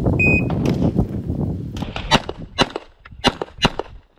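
A shot timer's short electronic start beep a fraction of a second in, over a loud low rumble. About two seconds in comes a quick string of about six handgun shots, in pairs and close groups, as the stage is shot.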